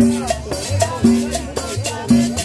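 Live Latin band playing salsa-style dance music: a conga drum and cymbal keep the beat over an upright bass line, with a strong drum stroke about once a second.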